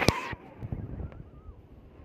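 Shallow surf washing in foam around a wader's legs, with a sharp knock just after the start. The rushing cuts off abruptly about a third of a second in, leaving softer low rumbling and a few faint squeaks.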